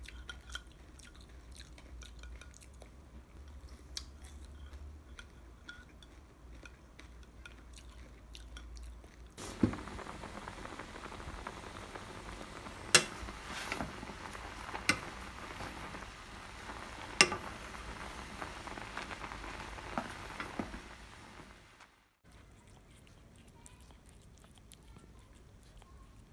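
A spoon clicking softly in a glass bowl of cereal and milk as someone eats. Then, about ten seconds in, a pot of water boiling with a steady bubbling hiss and several sharp clinks of utensils and packets against the pot. The sound drops out near the end.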